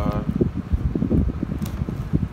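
Fan noise buffeting the microphone: an uneven low rumble with no clear rhythm.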